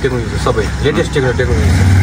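A man talking over a low engine hum, with the hum growing louder about a second and a half in.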